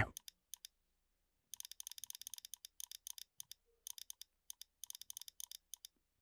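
Faint, rapid computer mouse clicks in quick runs, starting about a second and a half in. Each click pushes out another slot with the push/pull tool in a 3D modelling program.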